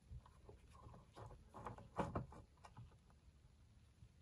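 Faint small clicks and scrapes of a screwdriver undoing a circuit-board screw, with the loose screw handled. The louder clicks come at about 2 seconds.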